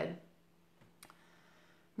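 A woman's voice trails off, then a quiet pause holds two small clicks, a faint one and a sharper one about a second in.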